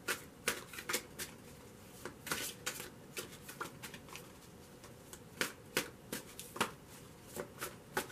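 A deck of tarot cards being shuffled by hand, with packets of cards slapping and clicking together at irregular intervals.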